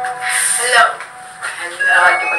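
A woman's voice with a short breathy laugh, over faint background karaoke music with held notes.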